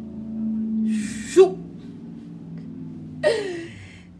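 A woman's voice: two short breathy vocal sounds about two seconds apart, each a hiss then a brief voiced sound, over a low steady hum.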